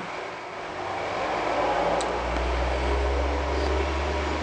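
A low, steady mechanical rumble that swells in about a second in and then holds, with one sharp click around the middle.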